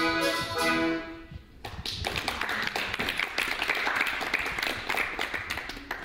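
A song with instrumental backing ends about a second in, and after a short pause hands clap in applause for about four seconds.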